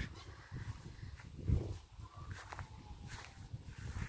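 Footsteps and camera-handling bumps from someone walking across grass outdoors, the loudest a low thump about one and a half seconds in.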